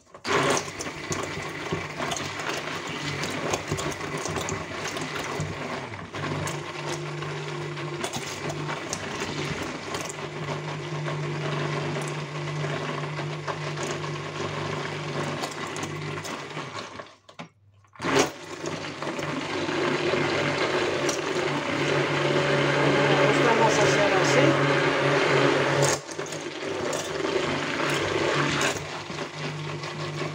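Electric stick blender running in a plastic bucket of lye soap batter, a steady motor hum under a wet churning noise as it emulsifies the mix. It stops for about a second around the middle and starts again, running louder for a while before easing off a little near the end.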